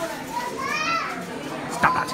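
A high-pitched voice rises and falls about halfway through, over a busy shop's background, with a short click near the end.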